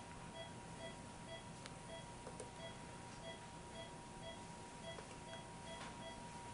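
Faint electronic beeping in a steady rhythm, about two short beeps a second, over a constant faint tone; typical of an operating-room patient monitor. A few faint clicks sound in between.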